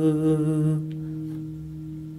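A man humming a long final note with a slight waver over a ringing acoustic guitar chord; the humming stops about a second in and the chord fades away.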